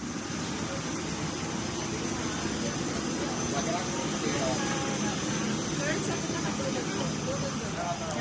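Steady rushing noise inside an airliner cabin, with indistinct voices of people nearby.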